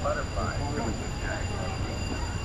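Indistinct chatter of passing people's voices over a steady low rumble, with a faint, steady high-pitched whine.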